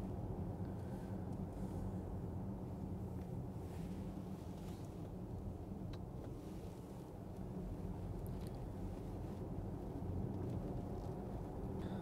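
Steady low road and tyre rumble heard inside the cabin of a Porsche Taycan electric car driving on a country road.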